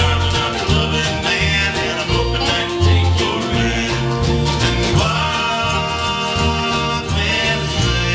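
A live band playing an upbeat country/bluegrass tune: strummed acoustic guitars over a steady upright bass and drum beat, with electric guitar.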